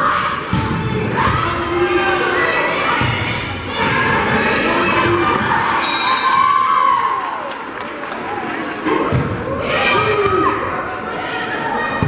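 Volleyball rally in a gymnasium: the ball smacked by players' hands and forearms, with shouted calls from players and crowd voices in the hall.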